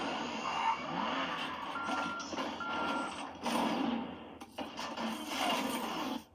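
Film trailer sound effects heard through cinema speakers: a dense mechanical clatter and rumble with two short steady beeps, like a vehicle's reversing alarm, a little under a second apart about two seconds in.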